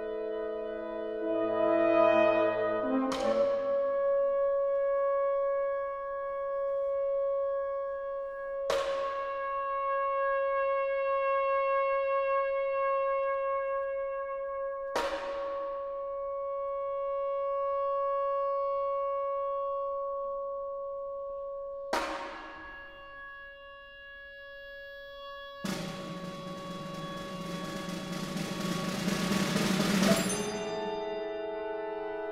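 Contemporary chamber ensemble music. One long held pitch is re-struck by a sharp attack four times, several seconds apart, each attack ringing on. Near the end a noisy swell builds up loudly.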